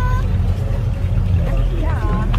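Low, steady rumble of idling classic car engines, with people's voices briefly at the start and again near the end.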